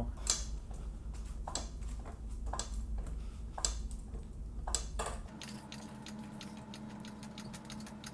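Floor jack being worked by its long handle: sharp metallic clicks and knocks about once a second. About five seconds in, quicker, lighter clicks take over with a faint steady hum under them.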